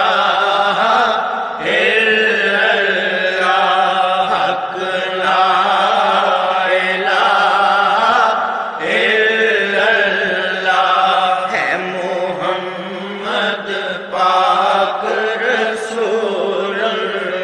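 Devotional Islamic song chanted by voices in long, held melodic lines, continuous and loud with no break.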